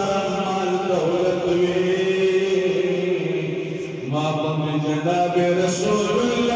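A man's voice chanting devotional verses in long held notes, breaking briefly about four seconds in before the chant resumes.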